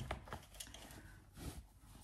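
Faint rustling of a velvet drawstring dust bag being handled and pulled open, with a few light clicks scattered through it.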